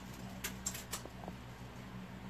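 Faint handling noise from clothes being moved: a few quick, light clicks about half a second to a second in, over a steady low hum.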